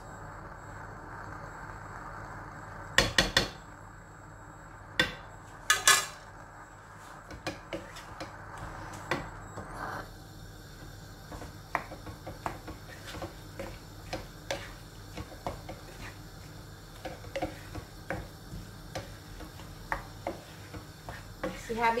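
Wooden spatula stirring and scraping food in a non-stick wok, with a few loud clacks of a utensil knocking against the pan in the first six seconds, then a run of small scrapes and taps.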